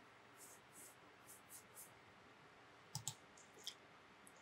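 Near silence with faint room tone, then computer mouse clicks near the end: a quick pair about three seconds in and a single click shortly after.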